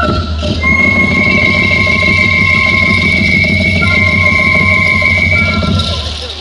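Traditional Andean wind music: a flute-like melody settles on one long held high note, lasting about five seconds over a dense low rumble of accompaniment.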